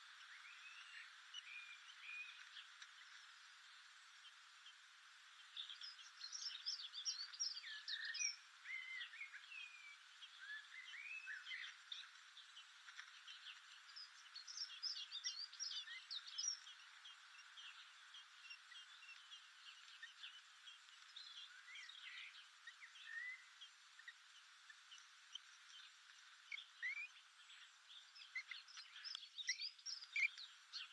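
Faint bird chirps and twittering song in scattered bursts over a steady low hiss, busiest several seconds in, in the middle and near the end.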